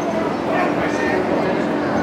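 Background chatter of many voices in a gymnasium, with a short high-pitched squeal about half a second in.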